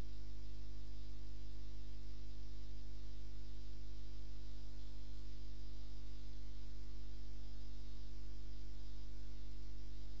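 Steady electrical mains hum, low-pitched and unchanging, with a faint hiss above it and no other sound standing out.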